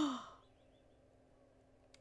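The tail of a woman's drawn-out, sighing "oh", falling in pitch and fading out within the first half second. Then near silence with a faint steady hum.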